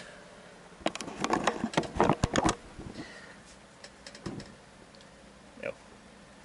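Handling noise: a quick run of knocks and clicks lasting about a second and a half, starting about a second in, as the electric guitar is set down and the camera is moved around it. After that only faint scattered ticks.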